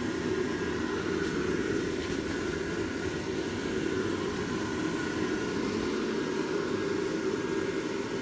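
Built-in "tornado" blower fan of an airblown inflatable running steadily, a continuous whir of air with a faint high tone over it. It is working against the back-pressure of the fully inflated figure, which the owner says makes the fan sound high-pitched.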